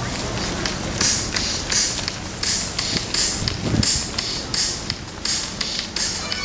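Nylon ski suit swishing in repeated short rustles as the wearer dances in place, about two to three swishes a second at an uneven beat.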